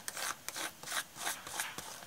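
Palette knife scraping texture paste across a plastic stencil onto a paper journal page, in short repeated strokes about three a second.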